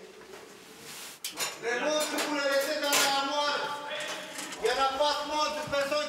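Slow singing with long held notes, starting about a second in.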